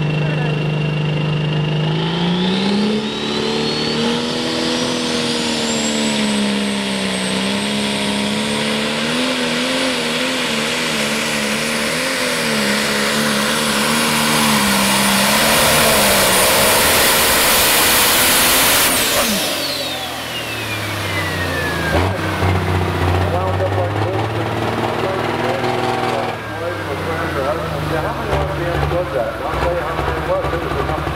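A John Deere super/pro stock pulling tractor's turbocharged engine revs up about two seconds in and runs at full power through a pull, its pitch wavering under the load of the sled while a high turbo whine climbs. About two-thirds of the way in the power comes off: the whine falls away and the engine drops to a low, uneven run with a few blips.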